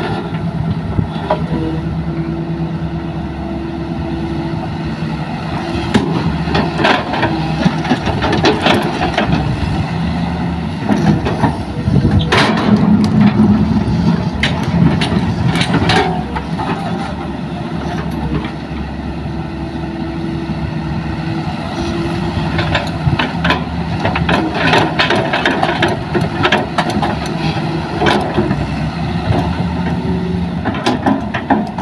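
Hitachi hydraulic excavator's diesel engine running under load as it digs and swings, the engine note rising and falling with the work and loudest a third of the way in. Scattered knocks and scrapes of the steel bucket in the soil.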